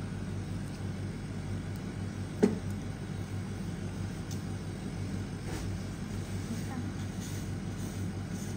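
Steady low machine hum, with one sharp click about two and a half seconds in.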